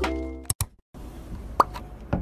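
Background music fades out, followed by two quick clicks and a brief silence. Then comes a single short, rising cartoon 'plop' pop sound effect, the kind that marks an animated label popping onto the screen.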